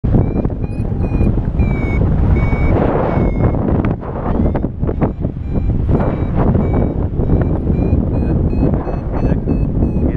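Paragliding variometer beeping a string of short high climb tones, about one or two a second, rising slightly in pitch later on: the glider is climbing in a thermal. Heavy wind rush on the microphone runs underneath.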